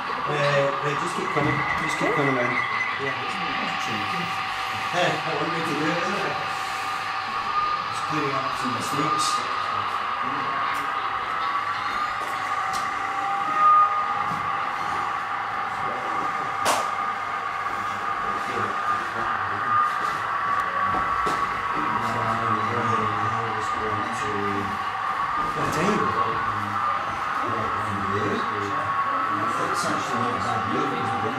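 Indistinct chatter of exhibition visitors under a steady high whine, which is plausibly the motor of the OO gauge model diesel multiple unit running on the layout. A single sharp click sounds about fourteen seconds in.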